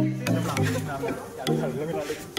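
Background music with a steady beat, plucked bass notes and hits about twice a second, with voices under it.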